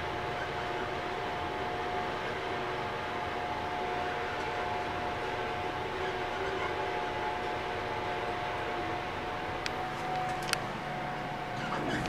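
Steady mechanical hum with a faint, constant whine around a Mitsubishi traction elevator, and a few sharp clicks near the end.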